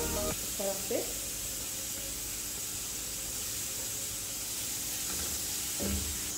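Chopped onions frying in hot oil in a nonstick kadhai: a steady sizzling hiss.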